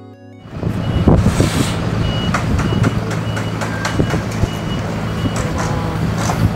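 Warning beeps from a car-carrier truck's tilting deck, a short high beep repeating about every half second, over the truck's engine running steadily and scattered metallic clanks and knocks as the deck moves.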